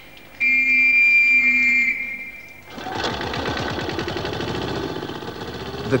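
A caver's whistle blown in one long, shrill blast of about a second and a half, a signal for cave divers who might be in passages beyond. From about three seconds in, an air compressor for filling divers' air cylinders runs with a rapid, even beat.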